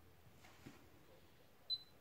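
Near silence with a faint tap, then near the end a short, high electronic beep.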